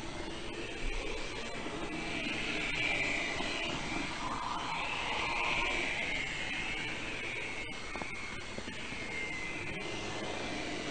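A model train running along its layout track, heard from a camera riding on it: a steady whine from the small electric motor and gearing over running hiss, the whine wavering up and down in pitch.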